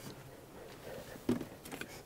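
Faint clicks and light knocks of a hand tool being handled as a Japanese pull saw is picked up from a table. The rest is quiet room tone.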